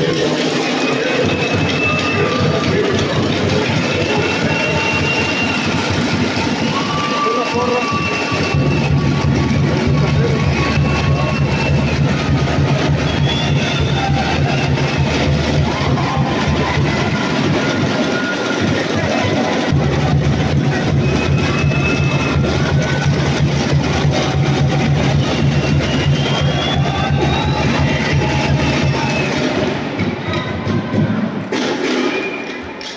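Crowd noise in a basketball gymnasium: many voices talking and calling out at once, with music playing over them. A steady low bass comes in about eight seconds in, drops out for about a second a little past the middle, then returns.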